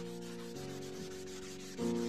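A folded tissue rubbing back and forth over drawing paper, blending graphite shading, a steady soft hiss. Background music with sustained chords plays underneath.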